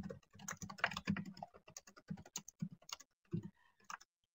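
Computer keyboard being typed on: a faint, quick, irregular run of key clicks.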